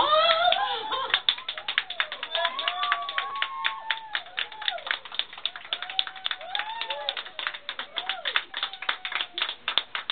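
A woman's exclamation of "oh" rising into a squeal, then a small group clapping quickly and unevenly, with excited voices over the applause.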